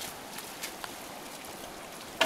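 Steady rush of a shallow creek running over rocks, with a couple of faint splashes from hands groping in a bucket of water.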